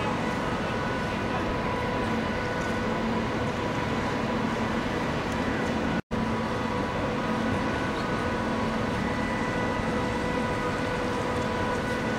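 Steady drone of a ferry's engines and machinery heard from its outer deck, a constant hum under an even rush of noise. The sound breaks off for an instant about halfway through.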